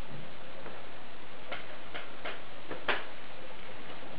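Steady background hiss with five or so small, sharp clicks at uneven spacing in the middle stretch, the loudest a little before the end.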